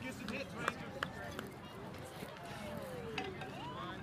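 Indistinct chatter of spectators and players around a baseball field, with a couple of sharp knocks about a second in and a long falling call in the middle.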